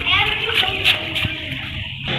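Indistinct voices over a dense, rushing background noise, with a few short clicks.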